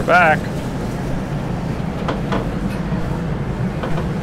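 Tender boat's engine running with a steady low drone, a brief voice with a falling pitch just at the start.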